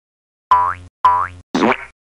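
Three short cartoon sound effects about half a second apart: two identical pitched ones, each with a quick upward sweep, then a noisier third.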